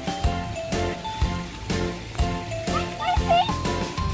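Background music with a steady beat, about two beats a second. Near the end comes a short high-pitched voice.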